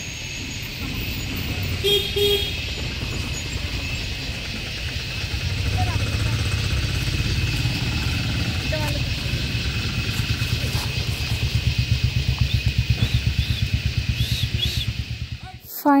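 A low, engine-like rumble, as from a motor vehicle, that grows louder about a third of the way in and pulses rapidly in the second half, under a steady high-pitched drone.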